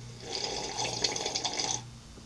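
A long slurping sip of hot tea from a mug, lasting about a second and a half.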